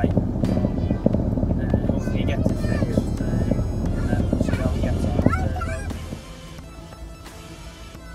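Low rumble of a Land Rover Discovery 1 driving, heard from inside the cabin, with voices over it; about six seconds in it gives way to background music.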